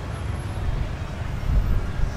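Outdoor street ambience: a steady low rumble of traffic on the road.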